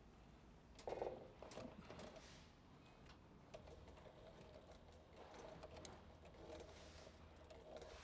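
Near silence: faint, scattered rustles and small clicks of vinyl and zipper tape being handled at a sewing machine, the loudest a brief rustle about a second in.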